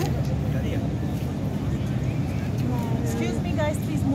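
Steady low rumble of road traffic, with a few people in the crowd calling out near the end.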